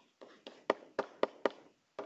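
Stylus tip tapping on a digital writing surface while letters are handwritten. There are about seven short, sharp taps, the loudest in the middle.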